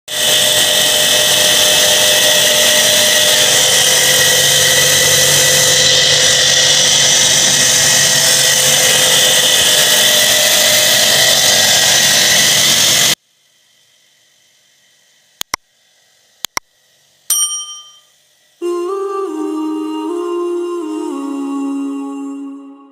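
Loud, steady mechanical noise that cuts off abruptly about thirteen seconds in. A few sharp clicks and a ringing chime follow, then soft hummed music begins near the end.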